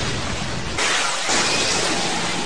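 Anime fight sound effect of smoke bombs going off: a sudden noisy rush, with a second, brighter surge a little under a second in.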